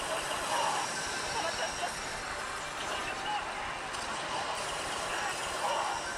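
Steady din of a pachislot parlour: the dense, unbroken jangle of many slot machines' electronic sounds and effects, with indistinct voices mixed in.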